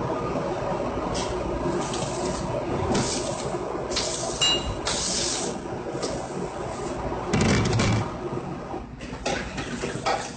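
A pan of pasta and sauce sizzling over a high gas flame, under a steady rush from the burner and extractor hood. The sizzle surges several times, and there is a short metal clink about halfway through.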